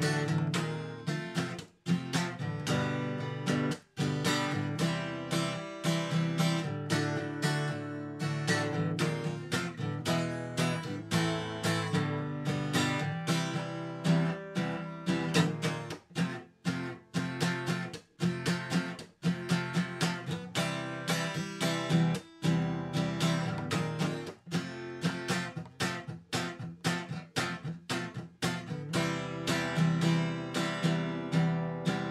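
Solo acoustic guitar strummed in a steady chord rhythm with no singing, a few strums choked off short.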